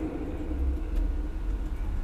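A low, steady background rumble with faint hiss.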